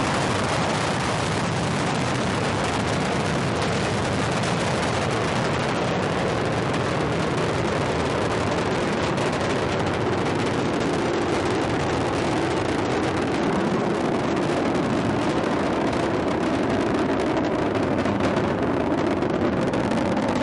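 Space Shuttle Discovery's two solid rocket boosters and three main engines during ascent: a steady, loud rocket roar with a crackle. The highest part of the sound thins slightly near the end.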